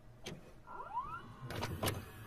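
Video cassette recorder's tape mechanism engaging play: several sharp mechanical clicks, with a small motor whirring up in pitch about a second in.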